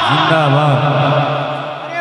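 A man's amplified voice chanting one long, drawn-out note through a microphone that fades just before the end. It is a stretched-out religious slogan call to the crowd.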